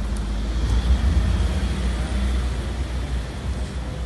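Low, steady outdoor rumble with a faint hiss above it and no distinct event.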